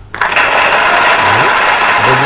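Quiz software's correct-answer sound effect: a loud, steady hiss-like noise that starts suddenly just after the answer is clicked, marking the choice as right.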